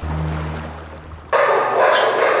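A low steady drone, then about one and a half seconds in, an abrupt cut to many dogs in shelter kennels barking and yipping at once, a dense overlapping din.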